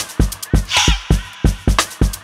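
Electronic dance track with a syncopated beat of deep kick drums, a bright snare-like hit just under a second in, and short pitched sounds that bend up and down above the beat.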